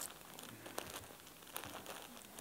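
Faint crinkling of plastic bags as t-shirts packed in them are handled, with a few light ticks.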